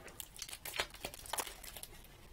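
A paper sleeve of paintbrushes crinkling while the brushes are sorted through by hand, with a run of small irregular clicks from the brush handles knocking together.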